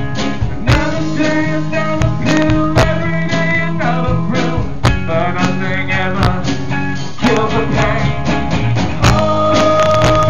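A live band plays a blues-rock song, with acoustic guitar, a steady beat and singing, heard through poor, loud camera sound. A long held note comes in near the end.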